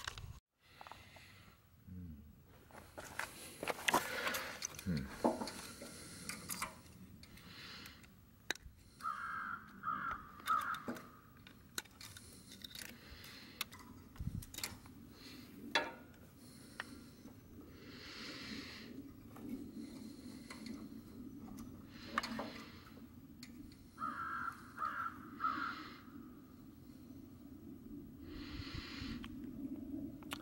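Small metal clicks and rattles as an engine's carburetor and its linkage rods are worked loose by hand and with pliers. A crow caws in the background, three caws about nine seconds in and three more about twenty-four seconds in.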